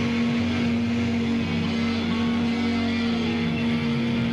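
Harmonica blown into a cupped handheld microphone, amplified and distorted, holding one long steady note over a droning rock-band backing.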